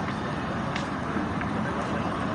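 Wind buffeting a phone microphone outdoors: a steady rushing noise.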